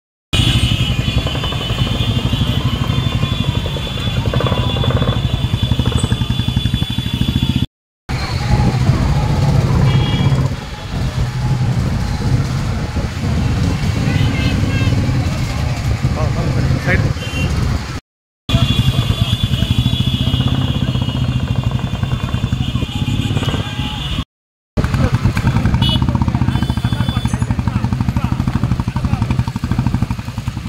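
A group of Royal Enfield Bullet single-cylinder motorcycles riding slowly together, engines running steadily, with people's voices around them. A high steady tone sounds over two long stretches, and the sound cuts out briefly four times.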